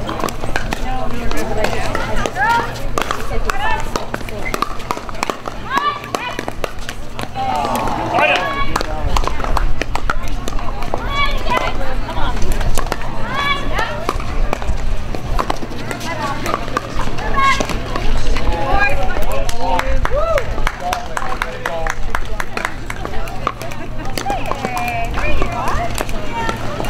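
Conversation from nearby spectators, with sharp pops of pickleball paddles striking the plastic ball during a rally. A steady low hum runs underneath.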